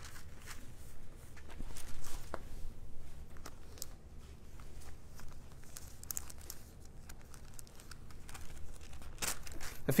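Thin Bible pages being leafed through, rustling and crinkling with soft flicks, loudest about two seconds in.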